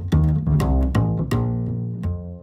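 Plucked upright bass playing a short line of notes, each with a sharp attack and a ringing low tone, as end music.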